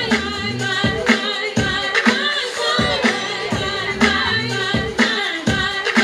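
Dance music with a singing voice over a steady beat of about two beats a second, played over loudspeakers.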